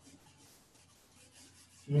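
A faint whiteboard eraser wiping across the board in a run of short rubbing strokes.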